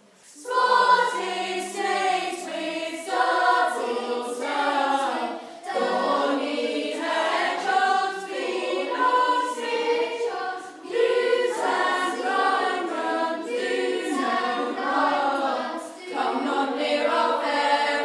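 Several voices singing a song together, in sung phrases with short breaks, starting about half a second in.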